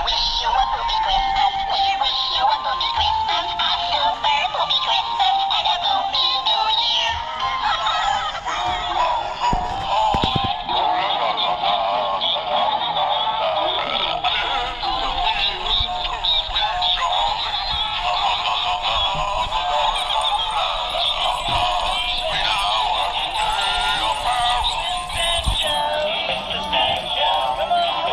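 Animated plush Christmas toys playing recorded songs with singing through their small built-in speakers, thin-sounding with little bass.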